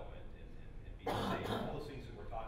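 A man clears his throat with a rough, two-part cough about a second in.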